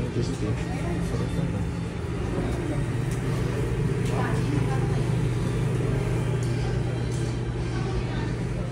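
Restaurant room noise: background voices over a steady low hum.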